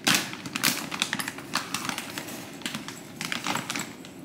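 Dry cat food kibble rattling and a plastic food bag crinkling as a hand digs into the bag and scoops kibble out with a small cup: a busy run of small clicks and rustles, loudest right at the start and again near the end.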